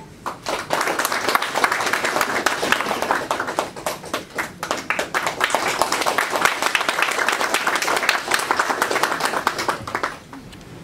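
A small group of people clapping their hands: steady applause that starts just after the beginning and cuts off suddenly at the end.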